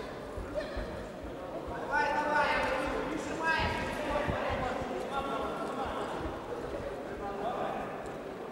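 Raised, shouting voices in a sports hall, loudest from about two to four and a half seconds in, over repeated dull thuds of boxers' feet and punches on the ring.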